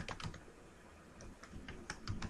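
Faint computer keyboard typing: a few keystrokes at the start, a pause of about a second, then a few more keystrokes near the end.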